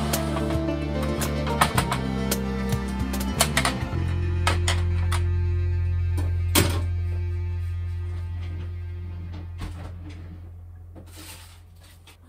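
Background music that holds a long low note from about four seconds in, then fades out over the last few seconds. A few light clicks and knocks sound over it, mostly in the first few seconds.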